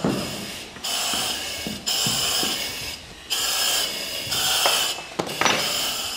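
Firefighters' breathing apparatus hissing through the face-mask regulators, a run of hissing breaths about a second long each with short gaps between them, and a few light knocks of gear.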